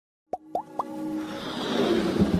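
Logo-intro sound effects: three quick upward-gliding bloops about a quarter second apart, followed by a swelling whoosh that builds over a held musical note.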